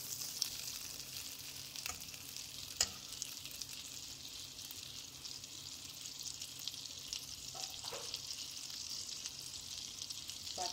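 Butter melting and sizzling in a hot nonstick pan: a steady, fine crackle of foaming fat. A single sharp click about three seconds in.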